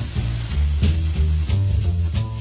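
Swing jazz by an alto saxophone, piano, double bass and drums quartet, on a 1958 recording played from vinyl. The double bass walks through changing low notes under repeated cymbal strokes.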